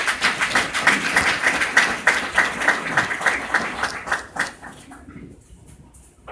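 A crowd applauding, a dense run of claps that thins out and dies away about five seconds in.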